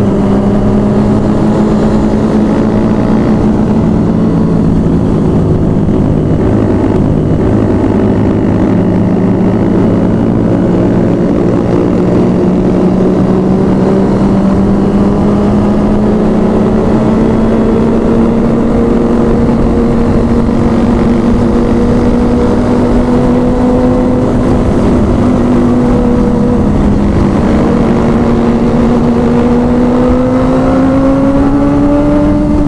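Sport motorcycle engine running steadily at cruising speed, heard on board over road and wind rumble. Its pitch holds level, then rises gently near the end as the bike speeds up.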